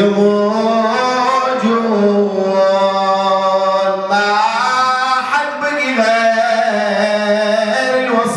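A man's voice chanting a mournful religious elegy into a microphone, holding long drawn-out notes that bend and glide from one pitch to the next.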